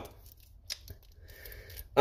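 A pause with only faint room tone, broken by a couple of small clicks about two-thirds of a second in and a faint soft hiss in the second half.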